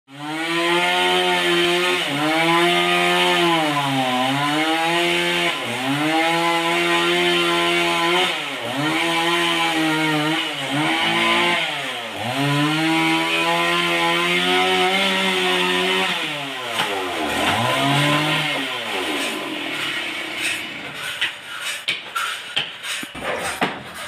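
Chainsaw cutting into a large trembesi log, its engine pitch dipping every couple of seconds as it bogs under load. About sixteen seconds in the engine winds down and stops, and several sharp knocks of wood follow near the end.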